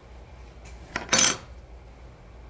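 A brief clatter of hard objects about a second in: a click, then a short, louder rattle.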